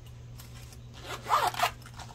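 A wallet's zipper being pulled open in one short rasping stroke, a little over a second in.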